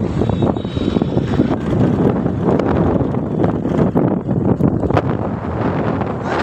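Wind buffeting the phone's microphone: a loud, uneven rumbling noise with no voices over it.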